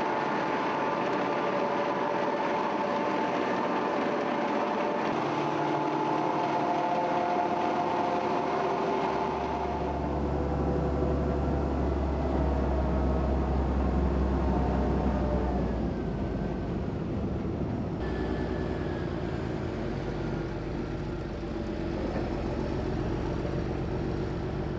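Tractor engine running steadily while driving a Shelbourne Powermix Pro-Express 22 diet feeder wagon's augers and discharge conveyor, and then towing the wagon. The sound shifts abruptly several times, and a deeper engine hum comes in about ten seconds in.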